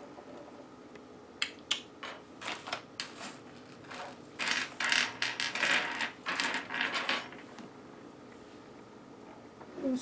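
Small hard items being handled: a few light clicks, then about three seconds of clicking and rattling, as of small ornaments being sorted through, which then dies away.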